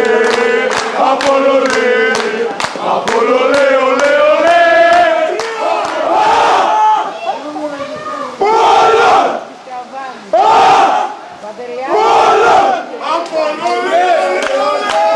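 Football supporters in the stands singing a chant together over regular hand-clapping, then switching to loud shouted chants in bursts about every two seconds.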